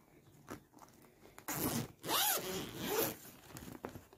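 Zipper on a fabric travel bag pulled open: after a quiet first second or so, one long zipping run in the middle, then a few smaller rustles as the flap is opened.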